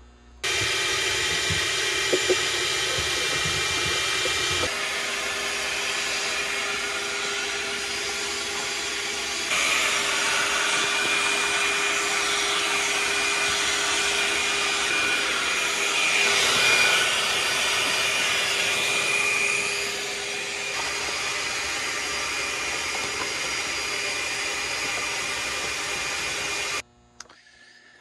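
Shop vac running steadily, its hose sucking up powdery dust and debris from the tops of lead-acid batteries. The noise shifts abruptly in level a few times and stops shortly before the end.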